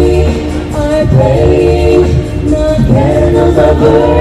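A five-member a cappella vocal group singing in harmony through handheld microphones. Several voices hold and shift chords together over a steady bass line.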